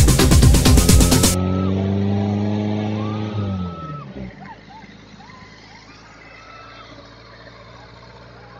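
Electronic dance music that cuts off abruptly about a second in, followed by a vehicle engine running steadily and then winding down in pitch and fading. A quiet outdoor background with a few faint short calls remains.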